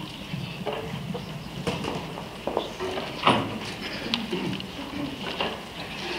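Shoe heels clicking and knocking on a wooden stage floor, with scattered small knocks and faint murmuring voices over a low room hum in a hall; the loudest knock comes about three seconds in.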